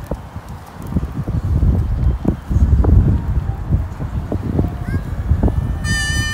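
Outdoor rumble of wind on a phone microphone with scattered thumps, likely the filmer's footsteps. About five seconds in, a high voice starts a long held call.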